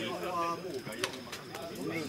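Indistinct voices of several people talking at a distance, overlapping, with one sharp click about a second in. A steady thin high-pitched tone runs underneath.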